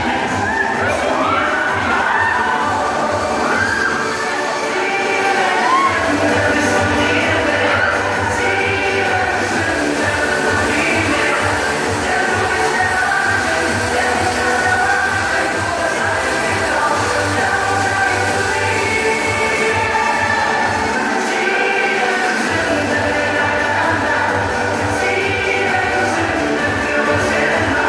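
Loud music from a fairground thrill ride's sound system with a heavy bass beat, and screams and shouts from the riders over it, mostly in the first few seconds. The bass drops out briefly twice.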